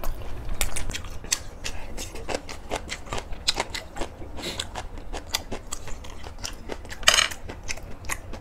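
Close-miked chewing of a mouthful of freshly made napa cabbage kimchi: a steady run of small crunchy mouth clicks, several a second. About seven seconds in there is one brief, louder hiss.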